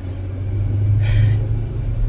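Steady low rumble of a car's engine and road noise heard inside the cabin while driving, with a brief soft hiss about a second in.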